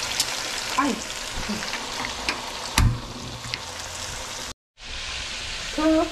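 Potato chips deep-frying in hot oil: a steady sizzle with scattered pops. There is a louder thump about three seconds in, and the sound cuts out for a moment near the end.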